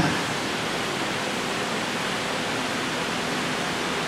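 Steady, even hiss of background noise, with no other sound standing out.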